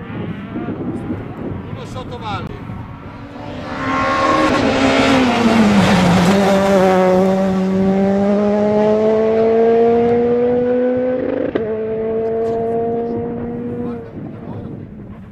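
Rally car going past at speed: its engine note drops as it goes by, then it pulls away with the revs climbing steadily. There is a brief break in the note about eleven and a half seconds in, and the engine is still pulling after it.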